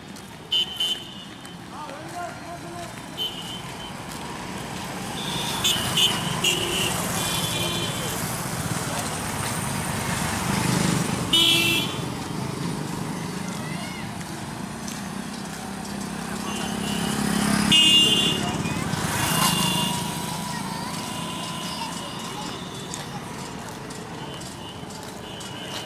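Street traffic: motor vehicles passing, louder twice (about halfway and again near three quarters through), with short horn toots and people's voices in the background.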